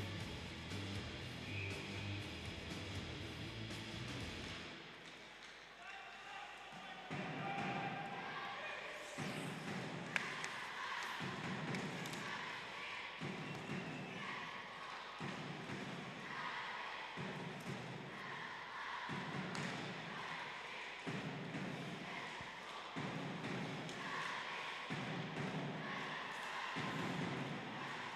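Ice hockey arena ambience: a steady rhythmic thumping about every two seconds begins about seven seconds in, with crowd voices over it.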